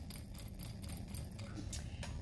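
Faint, quick light tapping, about six or seven taps a second, as a capped glass test tube of broth culture is flicked with the fingers to mix it by hand.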